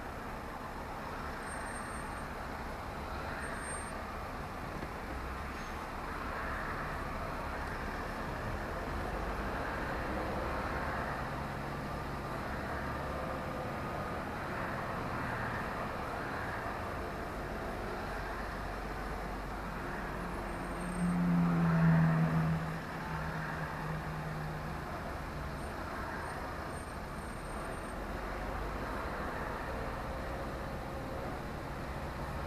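Steady engine and road noise heard from inside a lorry cab crawling in queuing traffic, with a louder low hum lasting about two seconds some two-thirds of the way through.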